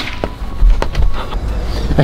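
Knocks and footfalls on a wooden ladder and roof as someone climbs up, with a low rumble on the microphone.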